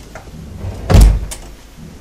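One loud, heavy thud about a second in, followed by a lighter knock just after.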